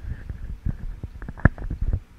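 Microphone handling noise: a run of knocks, clicks and low rumbles as a microphone on its stand is moved and adjusted, with one sharp knock about one and a half seconds in.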